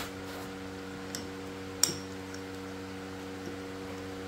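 A metal drill chuck is fitted onto a magnetic drill's spindle: a faint click about a second in, then a sharper metallic click just before two seconds. A low, steady electrical hum runs underneath.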